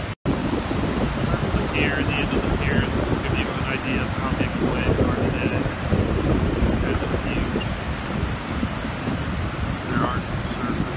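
Heavy ocean surf breaking and washing up the beach, a continuous rushing roar, with wind buffeting the microphone. The sound drops out for a split second just after the start.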